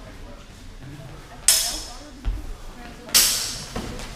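Steel training swords clashing twice, about a second and a half apart, each a sharp strike that rings on briefly, with a dull thud between them.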